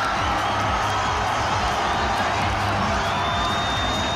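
Football stadium crowd cheering a goal, a steady loud roar, with background music underneath.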